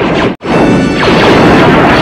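Film blaster fire and sparking console explosions: repeated falling-pitch zaps over a dense crash of blasts, with the film score underneath. The sound drops out abruptly for an instant about a third of a second in, then comes straight back at full loudness.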